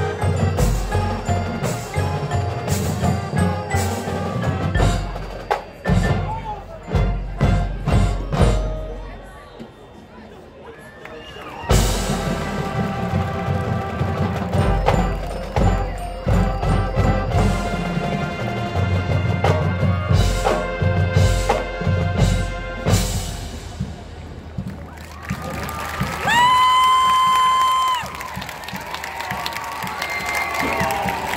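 A marching band playing live: brass, drumline and front-ensemble mallet percussion. The band drops to a quiet passage about a third of the way through, then comes back in loudly with the full band. Near the end a long high note is held and then cut off sharply.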